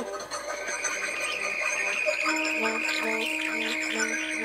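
Live free-improvised music from saxophones and electronics: a high held tone enters about half a second in. A little past halfway it is joined by a low steady drone and a low note pulsing about twice a second.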